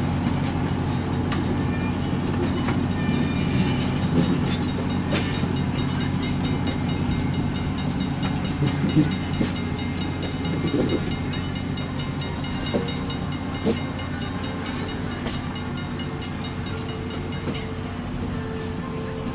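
Chicago and North Western bi-level passenger coaches rolling slowly past, with a steady low drone and scattered clicks and knocks from the wheels on the rails. The sound slowly fades as the last car goes by.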